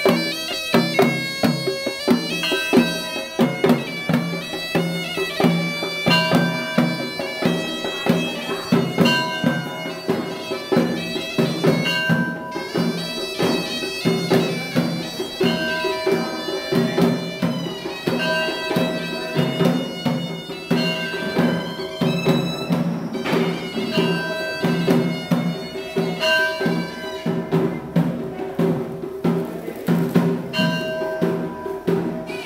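A Sri Lankan hewisi ensemble playing: a horanewa (double-reed pipe) plays a reedy, droning melody in held, stepped notes over steady rhythmic drumming.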